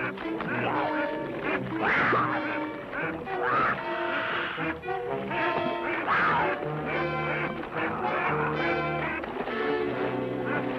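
Waterfowl calling repeatedly over background music with held notes.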